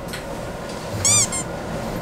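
Two short high-pitched squeaks about a second in, the first rising then falling in pitch, the second briefly after it.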